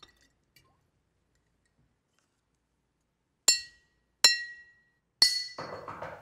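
Glass bottles clinked three times, each strike ringing the same clear high note that dies away within about half a second; the third strike runs into a rougher rattling clatter.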